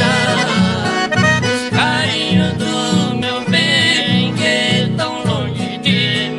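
Chamamé played on accordion with acoustic guitar accompaniment: the accordion carries the melody over a steady bass rhythm from the guitars.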